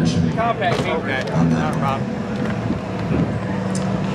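A wrecked demolition derby minivan's engine running, with indistinct voices over it in the first second or so.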